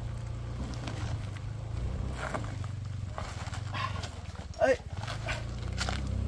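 Small underbone motorcycle engine idling steadily, with a few short voices nearby and one brief, loud call about two-thirds of the way through.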